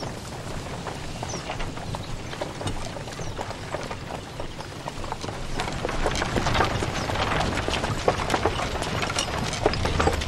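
Horse hooves clip-clopping at a walk, mixed with the footsteps of a group walking alongside, getting louder about halfway through.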